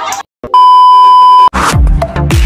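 A loud, steady electronic beep at one pitch lasts about a second and cuts off sharply. Electronic dance music with heavy bass and falling bass sweeps then starts.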